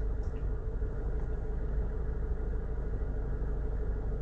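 Steady low rumble with a faint steady hum above it, unchanging throughout.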